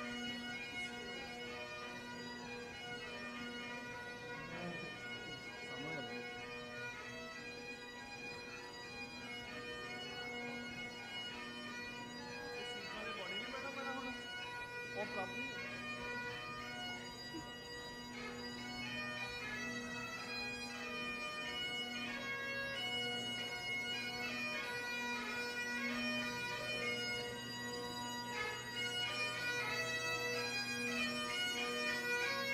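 Bagpipes playing a tune over their steady, unbroken drones, gradually growing louder toward the end.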